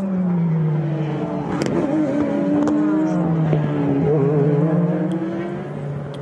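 Race car engines running at low speed in the pit lane, their pitch falling, rising and falling again.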